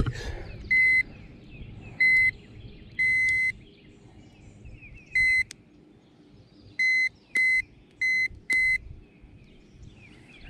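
Digital fish scale beeping eight times in short, even-pitched beeps, one held a little longer about three seconds in, as it weighs a hanging bass. Faint bird chirps behind.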